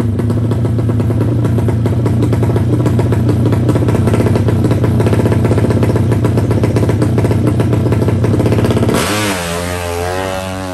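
Drag-race motorcycle engine held at steady high revs on the start line. About nine seconds in it launches, and the note sweeps up and down in pitch as the bike pulls away and grows quieter.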